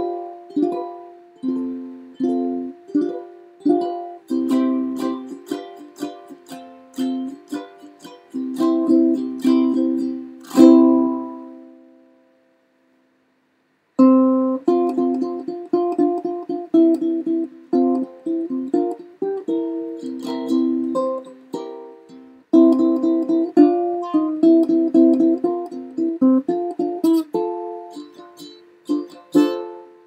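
Curly maple and rosewood tenor ukulele (Anuenue Kyas) played solo, a steady run of plucked chords. About eleven seconds in, a last chord rings out and fades away, there are about two seconds of silence, then the picking resumes.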